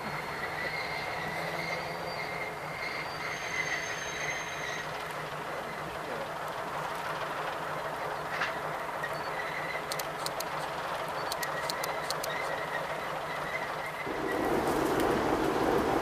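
Czechoslovak 'Hektor' small diesel locomotive hauling a short train of goods wagons past: a steady running sound of engine and wheels, with a thin high wheel squeal on the curve coming and going. A run of sharp clicks sounds about two thirds of the way in, and near the end the sound grows much louder and fuller as the locomotive is close.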